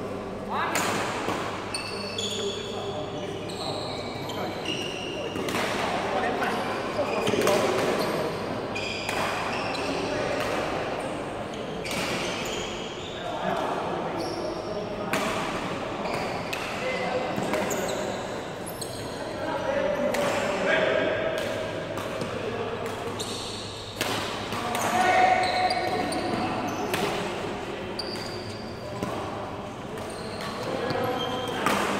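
Badminton play on a sports-hall court: sharp racket-on-shuttlecock hits, footfalls and short shoe squeaks on the court floor, with voices in the background, echoing in the large hall.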